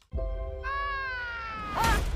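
Trailer score sting: a held chord with a high tone gliding slowly downward. Near the end comes a short, high squeaky cry from a marshmallow Mini-Puft.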